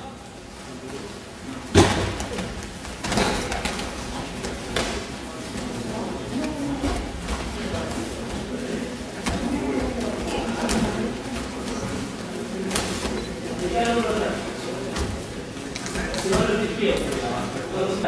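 Judo practice on tatami mats: scattered thuds of bodies and feet hitting the mat, the loudest about two seconds in, over a continuous murmur of many voices.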